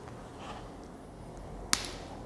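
Dog nail clipper cutting through a Pomeranian's long, overgrown claw: one sharp click near the end.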